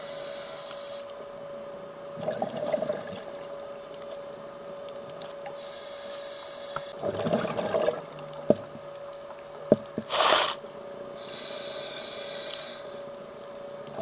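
Scuba regulator breathing underwater: a hissing inhalation through the regulator, then a gurgling burst of exhaled bubbles, repeated about every five seconds, over a steady hum. A couple of sharp clicks come in the middle.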